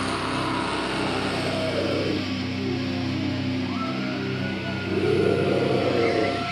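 A metal band's final chord ringing out: sustained distorted electric guitar and bass notes through the amplifiers after the drums stop, with a high feedback tone rising about four seconds in and a louder noisy swell near the end.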